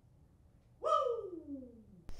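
A single hoot-like pitched sound that starts just under a second in and slides steadily down in pitch for about a second.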